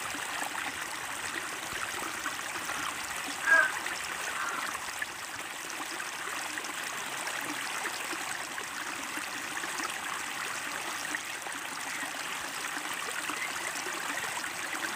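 A steady rushing noise runs throughout, broken once, about three and a half seconds in, by a brief high-pitched sound that is the loudest moment.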